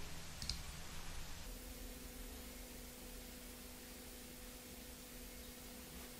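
A single faint computer mouse click about half a second in, then quiet room tone with a faint steady hum that starts about a second and a half in.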